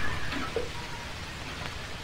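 Hiss and crackle of an old optical film soundtrack, with a low hum underneath.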